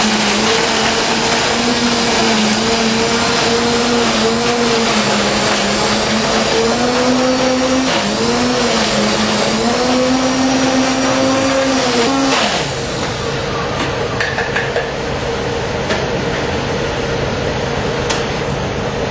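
Countertop blender running at full power, crushing ice into a coffee frappé with milk, espresso and frappé powder; the motor pitch dips and wavers as the ice breaks up. It cuts off about twelve and a half seconds in, leaving a quieter steady noise.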